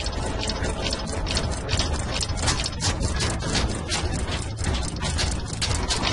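Rapid, fairly regular mechanical clicking, several clicks a second like a ratchet or gears, over a steady low rumble.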